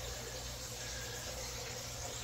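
Steady low hiss with a faint low hum underneath and no distinct sounds: background room noise.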